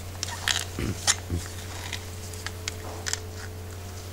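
A putty knife scraping and scooping soft linseed oil putty out of a plastic tub: a few short, sticky scrapes and clicks over a steady low hum.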